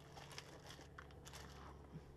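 Faint crinkling of plastic packaging bags and light clicks of cables and connectors being handled, in short scattered rustles.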